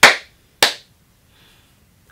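A slow, sarcastic hand clap: two sharp claps about 0.6 s apart.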